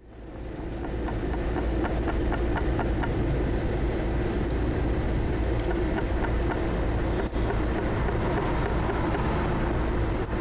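Outdoor ambience fading in: a steady low rumble from an unclear source, broken by a few short, high bird chirps.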